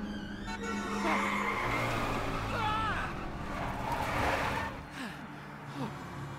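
Cartoon race car's tyres skidding and squealing in several bursts, with a falling squeal a little before halfway and again near the end, over steady background music.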